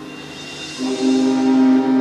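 Marching band playing its competition field show: a soft, quiet stretch with a high shimmer, then just under a second in the band comes in with a loud held chord.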